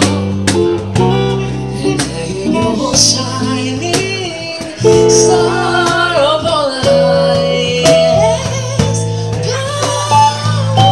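Acoustic guitar strummed in a steady rhythm while a man sings a song into a microphone, with other voices singing along.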